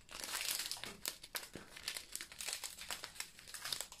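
Small clear plastic bags of diamond-painting drills crinkling as they are handled and turned over in the hands, with a run of irregular light crackles.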